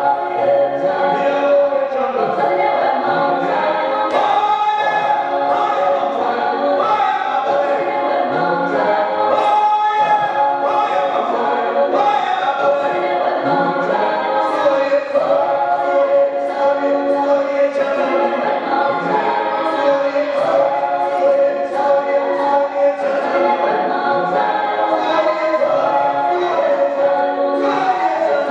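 A song with a group of voices singing together in chorus over music, at a steady level, with light percussive ticks through it.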